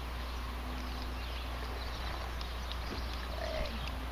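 Faint outdoor ambience: a steady low rumble with a few soft ticks.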